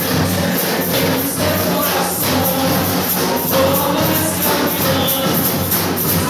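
Brazilian carnival bloco music: a percussion band of surdo bass drums, snare and shakers playing a steady carnival beat, with a sung or played melody over it.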